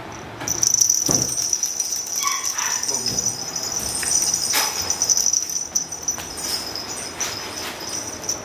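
A young British Shorthair kitten gives a short, high mew about two seconds in while playing with a feather wand toy. A steady high-pitched whine runs under it.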